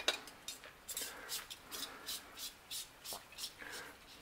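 Small gas lantern's threaded brass fitting being screwed onto an isobutane canister: a string of light metallic clicks and scrapes, a few a second and uneven in spacing.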